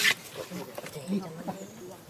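People's voices speaking quietly and indistinctly, opening with a short sharp noise.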